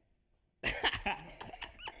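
A short silence, then a person laughing in short breathy bursts from about half a second in.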